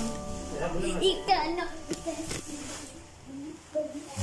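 Young children's voices, chattering and calling out, over faint background music, with a couple of sharp knocks about halfway through. The music swells back in at the very end.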